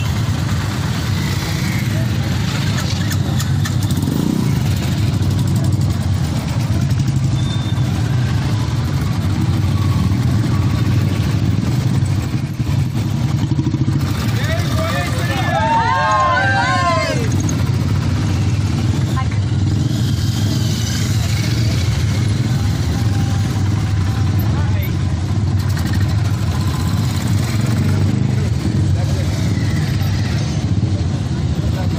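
Several motorcycle engines running steadily at low speed as the bikes ride slowly past, with people's voices over them. About halfway through, a warbling tone rises and falls repeatedly for about three seconds.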